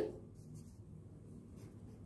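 A pen writing on paper, heard as a few faint, short strokes just after a voice finishes a word.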